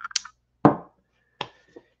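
Three short, sharp clicks spread over two seconds, each dying away quickly.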